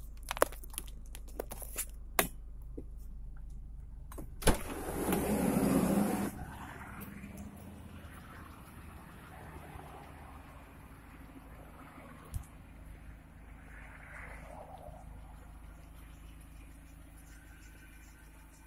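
A few sharp clicks, then a single knock and about two seconds of rustling as a car door is opened and someone gets out, followed by quieter handling over a low steady hum.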